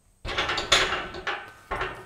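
Loaded barbell with bumper plates being set back onto the steel squat rack's hooks: a run of metal knocks and rattle lasting about a second and a half, then a shorter knock near the end.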